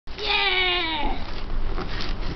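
A person's voice gives one long, high, drawn-out call that slides slowly down in pitch and stops about a second in, leaving background noise.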